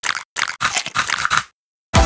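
Crunchy chewing: a run of quick, irregular crunches lasting about a second and a half, then stopping suddenly.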